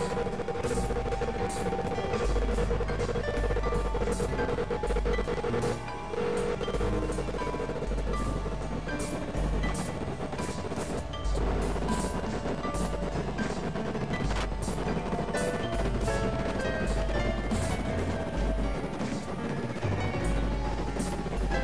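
Experimental electronic music from synthesizers, thought to be a Novation Supernova II and a Korg microKorg XL. Deep bass tones switch on and off in blocks of a second or two under held drone tones, with a busy, irregular scatter of sharp clicks throughout.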